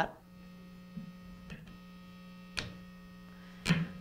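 Steady electrical hum, a buzz with many overtones, from an electric guitar's DiMarzio True Velvet single-coil pickup through an amplifier with the selector in a single-pickup position. This is the typical hum a single coil picks up from mains interference. A few light clicks sound over it, and the hum cuts off near the end.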